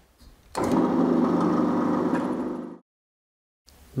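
Pillar drill running with an 8.5 mm bit, spotting through a hole into the chuck's back plate. It is a steady machine sound that starts about half a second in and cuts off suddenly after about two seconds.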